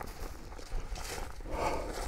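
Footsteps and rustling on sandy ground, uneven and fairly quiet.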